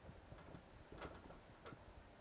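Faint, short ticks and scratches of a marker writing on a whiteboard, a handful of them scattered through the quiet.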